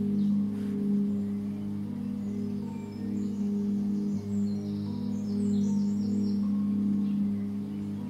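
Calm background music of long, held low notes that shift a few times.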